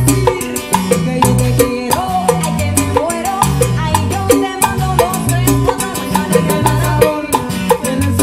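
A live Cuban son band playing an upbeat number, with guitar, a moving bass line and steady percussion.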